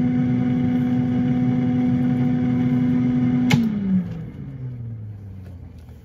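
Air fryer's fan motor running with a steady hum. About three and a half seconds in it is switched off with a click, and the hum falls in pitch and fades as the fan winds down.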